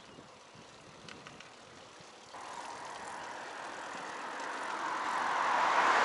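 A road vehicle passing: its noise swells steadily from about two seconds in and is loudest near the end.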